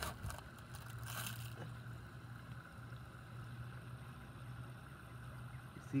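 Faint, steady sound of a small creek's water flowing, under a low steady hum, with a short burst of noise about a second in.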